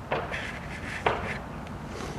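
Handling sounds of a rubber multi-rib serpentine belt being bent and turned in the hands: two sharp knocks about a second apart, with a brief rubbing between them.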